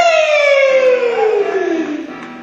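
Live rock band, with one sustained instrument note sliding smoothly and slowly down in pitch by more than an octave, like a siren winding down.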